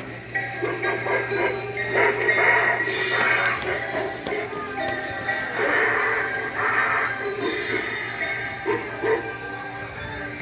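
Music and sound effects playing from the speaker of a sensor-activated animatronic cymbal-clapping monkey, with several louder crashing bursts over the tune.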